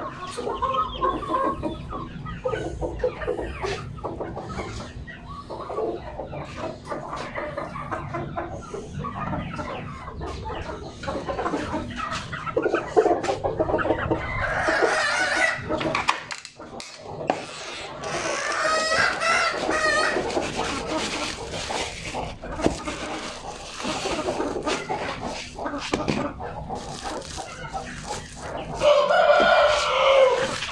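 Aseel chickens clucking and calling in a wire-mesh coop, with a louder call near the end.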